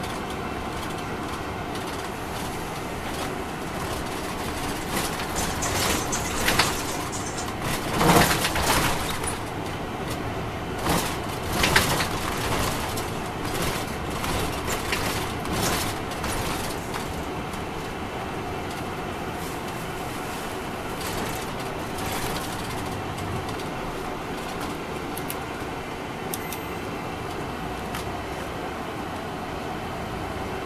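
Cabin noise of an MCI D4000 coach bus on the move: its Detroit Diesel Series 60 inline-six diesel and the road run as a steady rumble. Through the middle comes a run of rattles and knocks, two of them loudest, before the ride settles back to steady running.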